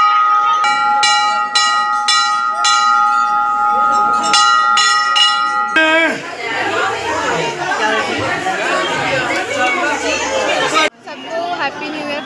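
Brass temple bell rung over and over, about two or three strikes a second, its ringing tone held between strikes. About halfway through it cuts to the chatter of a crowd.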